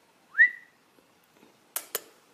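A person's single short whistle, rising and then held briefly, calling a small dog. Two sharp clicks follow near the end.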